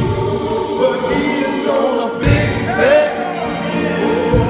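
Men's choir singing a gospel song with accompaniment, a low beat falling about every two seconds.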